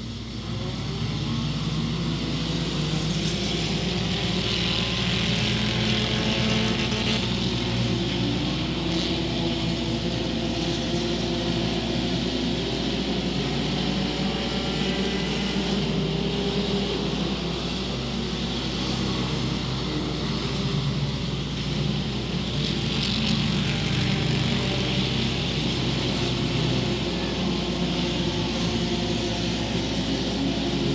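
A field of front-wheel-drive dirt-track race cars running hard around the oval, several engines overlapping in one continuous drone. It gets louder in the first second, then stays steady.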